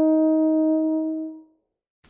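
Hans Hoyer G10A Geyer-style double horn holding the last note of a phrase, a steady pitched tone that fades out about one and a half seconds in.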